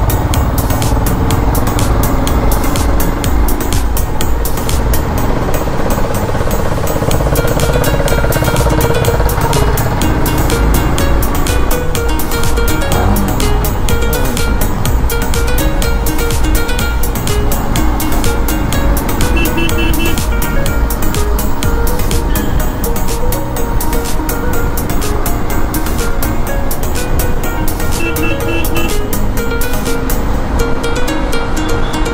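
Background music playing over a Royal Enfield Himalayan BS6 motorcycle being ridden: its single-cylinder engine running steadily with rumbling wind and road noise.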